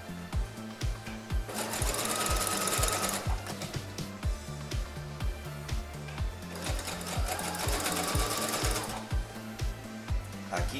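Electric household sewing machine stitching elastic onto lace in two runs of about two seconds each, a steady motor whine with the needle's rapid clatter, stopping between runs. Background music with a steady beat plays throughout.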